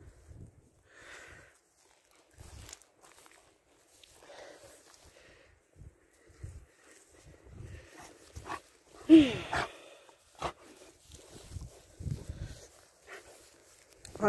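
Footsteps on grass, with scattered soft thumps. About nine seconds in, a single short vocal sound that falls in pitch, the loudest thing here.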